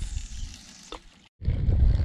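Wind buffeting an outdoor microphone beside a lake: a faint hiss at first, then, after a brief dropout to silence a little past halfway, a loud low rumble.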